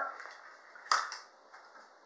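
A single sharp plastic click about a second in as a clear plastic lure box is snapped open.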